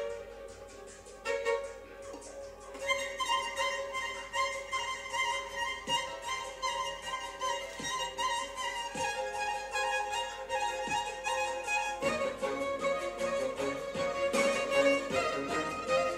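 Violin playing a slow melody of long, sustained bowed notes that change every few seconds. It grows fuller and busier in the last few seconds.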